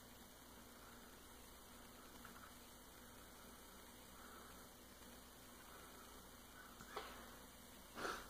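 Near silence: faint room tone, with one brief soft sound a little before the end.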